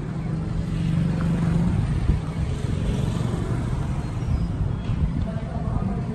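A road vehicle's engine rumbling as it passes close by, loudest in the first two seconds.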